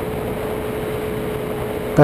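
Ultralight trike in flight just after takeoff: engine and wind noise on the onboard camera, a steady drone with a constant whine.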